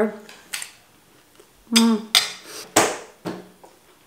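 Metal cutlery clinking against a plate and bowl: about five separate sharp clinks, the loudest in the middle of the stretch.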